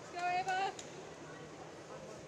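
A short, loud call from a person's voice, two syllables held on a fairly level pitch, over the steady background noise of an indoor pool hall.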